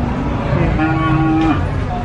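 A cow mooing: one long, steady-pitched call of about a second near the middle.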